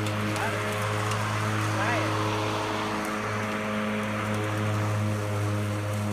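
WORX WG771 56 V cordless electric lawn mower running: a steady, even hum from the motor and spinning blade with a hiss above it, holding constant pitch and level throughout.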